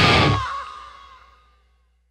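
Heavy hard-rock band music ending: the full band stops about half a second in and the last chord rings out, fading to silence within about a second.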